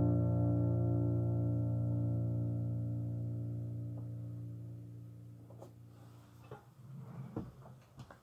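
Final chord on a keyboard ringing out and fading away steadily as the song ends. Near the end come a few soft knocks and rustles of handling.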